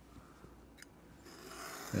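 A knife blade drawn through 4–5 oz vegetable-tanned leather along a metal straight edge: a faint rasping cut that starts about halfway in and grows louder, after a single soft click.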